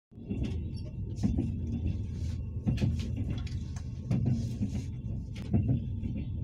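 Moving train heard from inside the carriage: a steady low rumble with irregular knocks and rattles.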